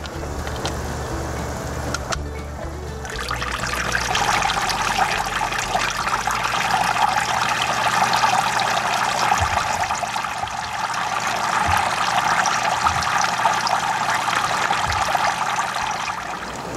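Water from a submersible fountain pump spraying through a drilled PVC sprayer bar and splashing as many small streams into a bait tank, with the tank's water churning. The splashing becomes much louder about three seconds in and then runs steadily.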